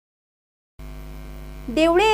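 Dead silence, then a steady electrical mains hum with many evenly spaced overtones switching on just under a second in, as a recording's audio begins. A voice starts speaking over the hum near the end.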